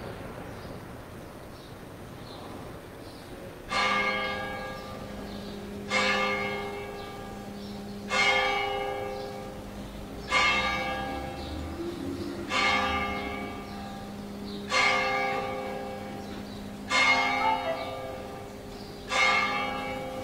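A bell tolling slowly, a stroke about every two seconds, starting about four seconds in; each stroke rings out and dies away over a steady low hum that carries on between strokes.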